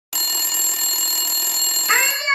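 A telephone bell ringing steadily and loudly, then cut off abruptly about two seconds in.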